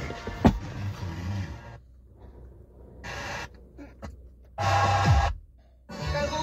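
Music playing on a car radio through the cabin speakers, cutting out suddenly about two seconds in. Two brief snatches of radio sound follow as the tuning knob is turned from station to station.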